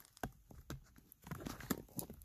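Faint, irregular clicks and knocks of a handheld phone camera being handled and repositioned against the car's dashboard, about half a dozen taps at uneven spacing.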